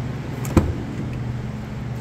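Rear passenger door of a Ford Explorer unlatching as the handle is pulled: one sharp click about half a second in, over a steady low hum.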